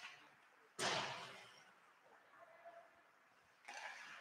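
A single sharp impact from the hockey play on the ice about a second in, echoing through the rink for about a second before dying away.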